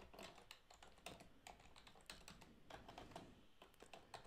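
Faint typing on a computer keyboard: a run of soft, irregular key clicks.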